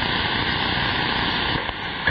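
Steady radio static from a receiver tuned to the 27.025 MHz CB channel, a band-limited hiss in the pause between transmissions, dipping slightly near the end.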